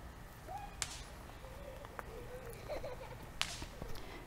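Two brief swishes about two and a half seconds apart, over a faint, quiet outdoor background.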